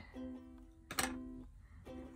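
Quiet background music on a plucked string instrument, chords struck about a second apart and left to ring.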